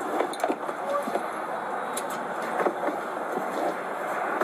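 Steady outdoor background noise on a body-worn camera, with a few light knocks and rustles from the patrol car's rear door and the person climbing into the back seat.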